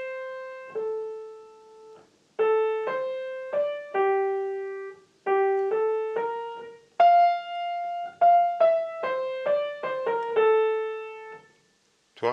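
Piano playing a simple right-hand melody, one note at a time, in the middle of the keyboard. The notes come in short phrases separated by brief pauses, with one longer held note about midway through.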